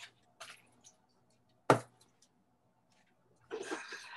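A single sharp click a little before halfway, over a faint steady hum, with a short stretch of rustling, breathy noise near the end.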